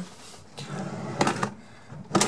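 Wooden drawer moving along steel ball-bearing drawer slides: a steady rolling rumble of the ball cage on the sheet-metal rail, broken by a few sharp metallic clicks a little over a second in.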